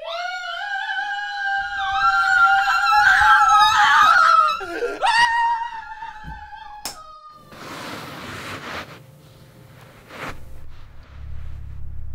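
A long, high-pitched scream held for about five seconds, wavering and then dropping and rising again in pitch as it ends. It is followed by a few sharp knocks and a brief rush of noise.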